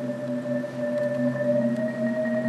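Percussion ensemble holding a soft, sustained chord: several long steady pitches with a slow waver, swelling slightly toward the end.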